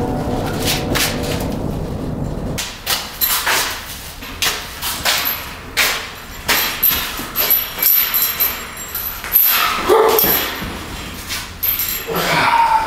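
Steel-frame mesh utility trailer being rolled on a concrete floor and tipped up on end: a low rolling rumble for the first couple of seconds, then a run of metal clanks and rattles.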